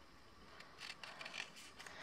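Small spring-loaded craft scissors cutting through folded double-sided paper: a few faint, short snips in the second half.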